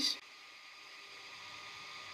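Faint steady background hiss with a thin constant hum, after the last word of a man's speech at the very start.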